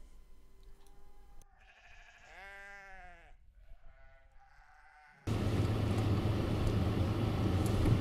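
Sheep bleating faintly: a long, wavering bleat about two seconds in, with weaker calls before and after it. A little past halfway the sound switches abruptly to a louder, steady noise with a low hum.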